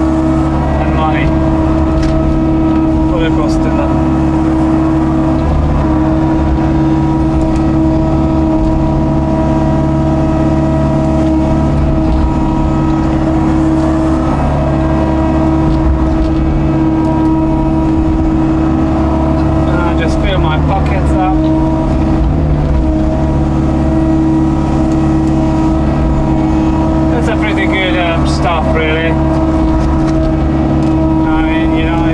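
Hitachi excavator's diesel engine and hydraulics running at steady revs under digging load, heard from inside the cab as a constant drone with a steady whine.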